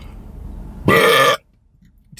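A man belches once, loudly, about a second in, a single burp of about half a second. The sound cuts off sharply after it.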